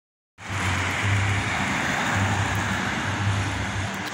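A Fiat Siena driving along the street: a steady rush of engine and road noise that starts suddenly a moment in, with an uneven low bass thumping underneath.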